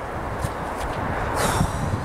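Wind rumbling on the microphone, with a brief louder rush of noise about one and a half seconds in.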